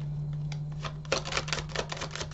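A deck of tarot cards being shuffled by hand: a fast run of card clicks starts about halfway through. A steady low electrical hum runs underneath.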